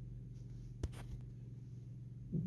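Quiet room tone: a faint steady low hum, with a single soft click a little before the middle.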